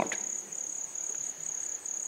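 Crickets chirping in a steady high-pitched trill, pulsing slightly and evenly.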